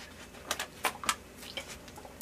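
Thin plastic water bottle crackling as it is drunk from and lowered: a handful of short, sharp clicks, fairly quiet.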